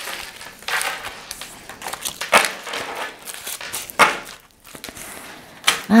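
Tarot cards being handled and shuffled on a tabletop: an irregular run of short papery rustles, the strongest about two and a half and four seconds in.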